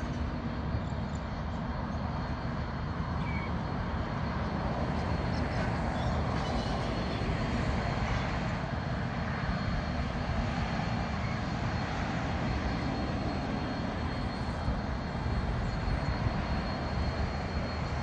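Diesel locomotives at the head of an approaching freight train running with a steady low drone.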